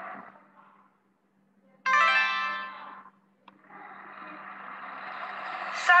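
A short plucked-string musical sting from a recorded children's story, starting suddenly about two seconds in and dying away within about a second. A click follows, then a rushing noise that grows steadily louder.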